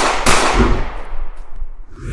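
Intro sound effect: a sharp crack like a firework burst just after the start, trailing off into a rushing noise that fades towards the end.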